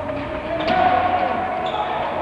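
A futsal ball kicked and bouncing on a wooden sports-hall floor, with a sharp knock about two-thirds of a second in, among players' shouts.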